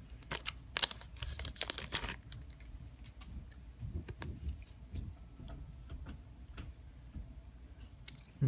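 Foil booster-pack wrapper crinkling and tearing open in the hands, a dense crackling in the first two seconds, then softer rustles and light taps as the cards are handled.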